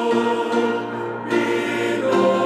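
A male vocal ensemble singing in harmony, holding sustained chords that change about halfway through.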